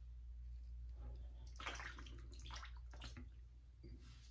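Double-edge safety razor scraping through lathered whiskers on the neck, a few short strokes about a second in.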